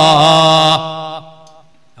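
A man's voice chanting one long, loud held note through a stage microphone and loudspeakers, with a slight waver in pitch. It breaks off under a second in and echoes away over about half a second.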